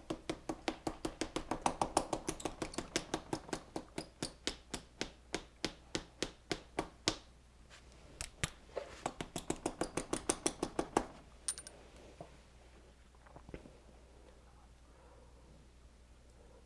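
A metal fly-tying hair stacker rapped over and over on the bench, about four sharp knocks a second. A short pause about seven seconds in, then a second run of taps that ends around eleven seconds in. This is stacking deer hair to even the tips for a wing.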